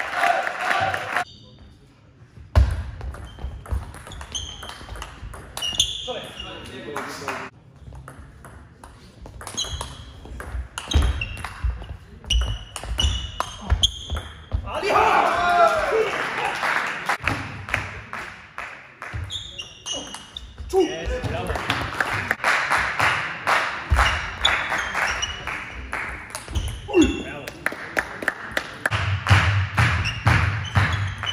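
Table tennis rallies: the ball clicking off the bats and bouncing on the table in quick irregular runs of hits, with voices in the hall between points.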